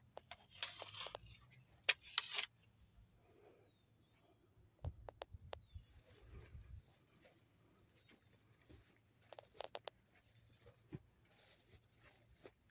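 Quiet outdoor sound of someone walking through low leafy plants: scattered rustles and clicks, a cluster of louder ones in the first couple of seconds, with a faint, rapid high ticking in the background in the second half.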